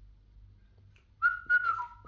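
Cockatiel whistling: a held whistled note starts about a second in, drops to a lower pitch near the end, and is followed by a short second note.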